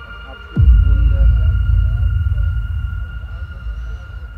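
A sudden low rumble, typical of wind buffeting the microphone, starts about half a second in and slowly fades, over several steady high whistling tones.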